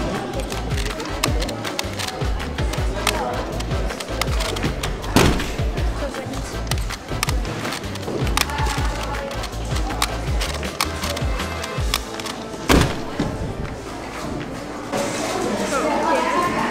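Background music with a steady bass beat, over quick clicking and clattering of Rubik's Clock puzzles being turned and their pins pushed. There are a couple of sharper knocks, about five seconds in and again near thirteen seconds. The music's bass drops out a few seconds before the end.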